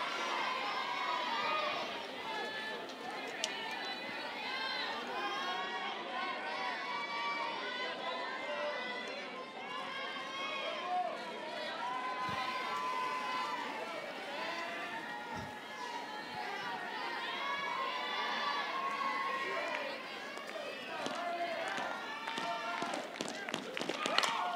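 Many voices from a softball stadium crowd and the dugouts, calling and chattering over one another at a steady level.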